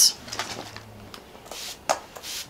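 MAC Fix+ setting spray misted from a finger-pump bottle. There is a short hiss at the start, another about a second and a half in, and then a sharp click of the pump.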